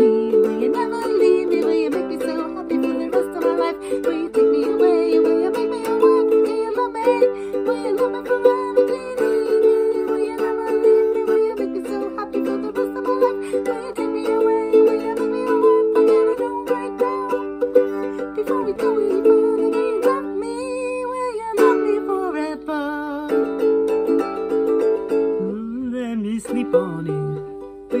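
Ukulele strummed in steady rhythmic chords. A voice briefly joins in twice in the second half.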